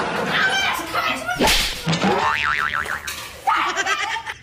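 Cartoon-style slapstick sound effects: a sharp crack about one and a half seconds in, then a quick wobbling, warbling tone like a comic boing.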